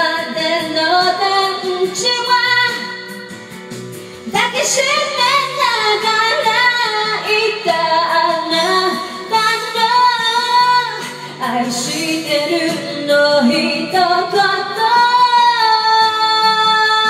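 A woman singing into a handheld microphone over backing music, holding long notes with vibrato; a short pause about four seconds in before the next phrase.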